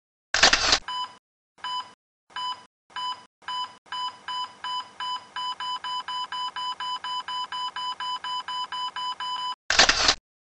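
Electronic beep sound effects: a short loud burst of noise, then a run of beeps at one steady pitch, about half a second apart at first and then quickening to roughly three a second. The run ends with a second loud burst of noise.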